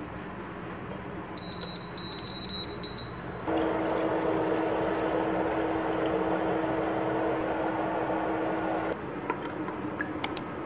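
Induction cooktop's touch panel giving a quick run of short high beeps, then water poured steadily from a pot into a nonstick frying pan for about five seconds, starting and stopping abruptly.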